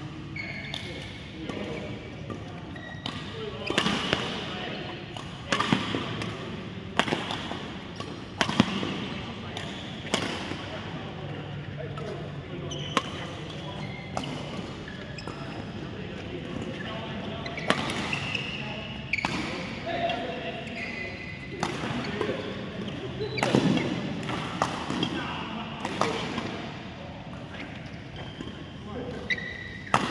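Badminton rackets hitting a shuttlecock in doubles rallies: sharp hits at irregular intervals, with voices in the background.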